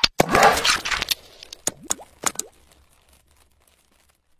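Animated logo sting sound effects: a sharp click, a short noisy rush, then a quick run of pops with short rising pitch glides, dying away about two and a half seconds in.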